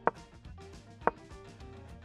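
Two sharp clicks about a second apart: the piece-placed sound effect of a chess board game, over faint background music.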